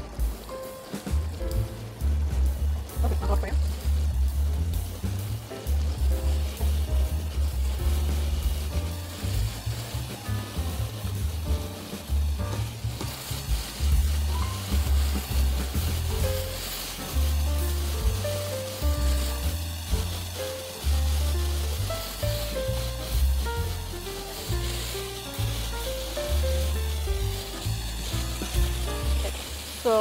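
Background music with a prominent, stepping bass line over chicken pieces sizzling as they pan-sear in a hot non-stick frying pan.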